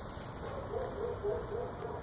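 A bird's soft, low cooing call: a string of short notes starting about half a second in.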